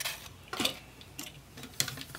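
Hard plastic toy robot figure being handled and shifted on a tabletop: a few short, sharp clicks and taps, about half a second in and again near the end.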